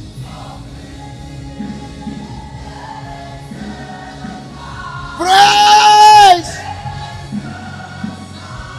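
Gospel worship song sung by a praise team of singers with backing music. About five seconds in, one loud held note stands out for just over a second before the music drops back.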